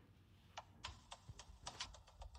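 Fingertips tapping on a phone's touchscreen, picked up faintly by the phone's microphone: a quick, irregular run of about eight light clicks starting about half a second in.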